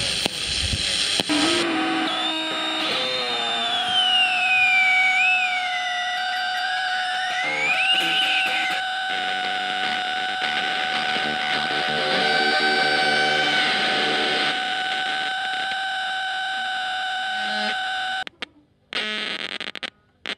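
Electronic soundtrack music: high sliding tones that fall and rise in pitch over steady held tones. It breaks off near the end, with a few short bursts after.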